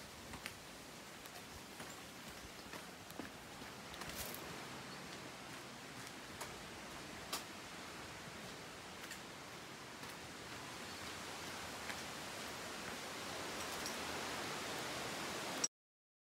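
Footsteps and light crunches on dirt and dry leaf litter, scattered and irregular, over a steady outdoor hiss that grows slightly louder; the sound cuts off abruptly near the end.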